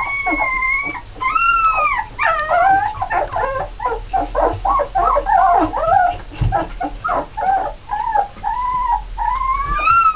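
A litter of 17-day-old Alaskan Malamute puppies crying and whimpering together: a couple of long drawn-out cries at first, then many short overlapping whimpers and yelps, and a long rising cry near the end.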